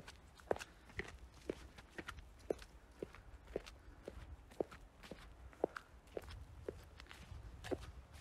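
Footsteps in fresh snow at a steady walking pace, about two steps a second.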